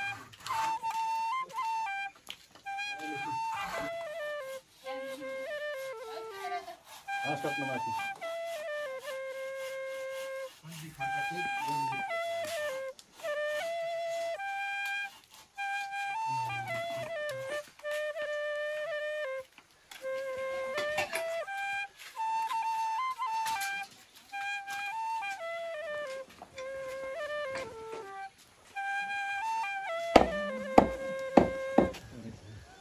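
Flute music: a single melody line played in phrases a few seconds long, each followed by a brief pause.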